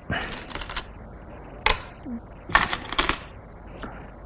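Go stones clicking on a wooden Go board as moves are laid out, in several bursts of sharp clicks: a cluster about a second long at the start, a single click, another cluster about three seconds in, and a last click near the end.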